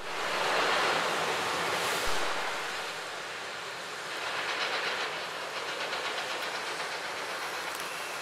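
City street noise: a steady rush of traffic, with a short knock about two seconds in and a faint rhythmic clatter around the middle.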